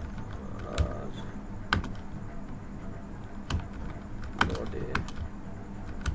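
Typing on a computer keyboard: unevenly spaced key clicks, slow and irregular, over a low steady hum.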